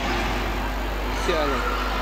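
Steady, even background din of a sports hall during a five-a-side football game, over a constant low hum, with a faint voice briefly about one and a half seconds in.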